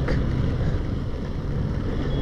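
Hero Karizma ZMR's single-cylinder engine running at a steady cruise, under a steady rush of wind and tyre hiss from the wet road.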